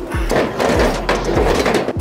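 Metal scaffold platform scraping and rattling against the steel scaffold frame as it is hauled up to the next level.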